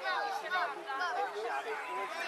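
Several people talking over one another, overlapping crowd chatter with no single voice clear.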